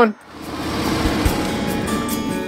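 Harley-Davidson Road Glide Limited's V-twin engine and road and wind noise while riding, rising quickly in level in the first half second and then steady, with faint guitar music coming in near the end.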